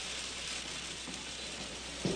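Food frying in a pan on a kitchen stove, a steady sizzle.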